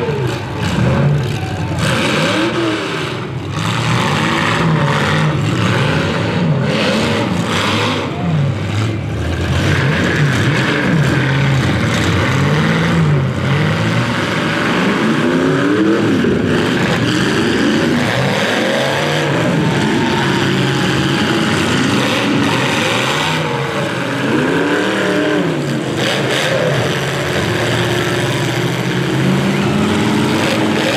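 Several demolition-derby minivans and small trucks revving hard, their engine notes rising and falling over one another, with occasional sharp crashes of the vehicles ramming each other.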